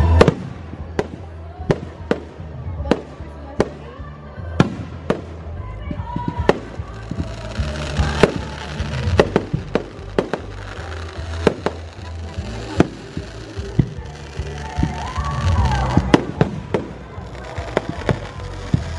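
Aerial fireworks bursting in a steady series of sharp bangs, about one or two a second, with music playing in the background.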